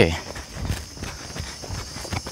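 Brisk footsteps on a dirt path, a quick run of short scuffs and steps, with a steady chirring of insects in the background.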